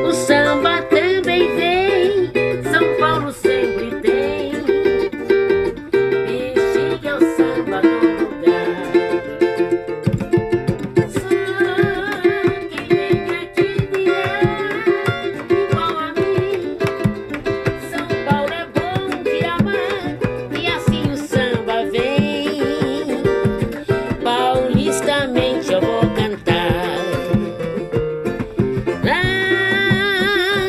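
Samba group playing an instrumental passage: bright plucked strings carry the melody over a steady accompaniment, and hand-drum strokes join about ten seconds in.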